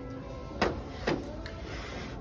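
Two sharp plastic clicks, about half a second apart, as a plastic top-hat cup with a flip lid is handled, over quiet background music.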